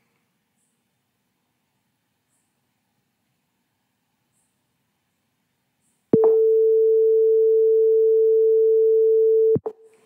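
A steady single-tone beep from the simulated buzzer of a PICSimLab PICGenios board. It starts with a click about six seconds in, lasts about three and a half seconds and cuts off with another click. It is the times-up alarm: the microwave-oven program's cooking timer has run out.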